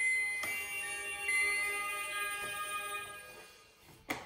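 Fisher-Price Little People Elsa's Ice Palace musical playset playing the closing notes of its electronic tune: a few ringing notes that fade out steadily and are almost gone by the end.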